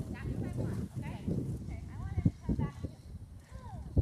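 Hoofbeats of a horse cantering on sand footing, with a few sharper knocks in the second half, under a distant voice.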